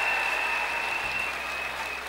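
Audience applauding, slowly dying down, with a thin steady high tone running through it.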